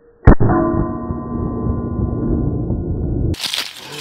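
A single pistol shot from a Beretta 81 in .32 ACP striking a playing card on a wooden two-by-four post: a sharp crack, then a deep rumbling boom with ringing tones that lasts about three seconds and cuts off suddenly, as in an edited slow-motion replay.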